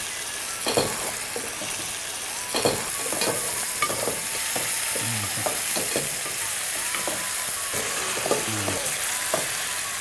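Pumpkin pieces frying in oil in a metal pot with a steady sizzle, while a spoon stirs them, knocking and scraping against the pot at irregular moments.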